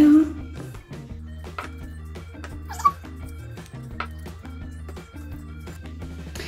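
Background music with a steady repeating rhythm of soft low notes. A brief high chirp stands out about three seconds in.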